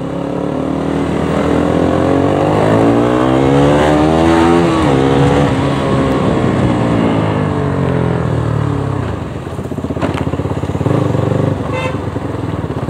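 Motorcycle engine heard from the rider's seat, pulling under acceleration with its pitch rising for about four seconds, then dropping sharply at a gear change. It runs on, falling in pitch as the bike slows, with uneven low throttle pulses near the end.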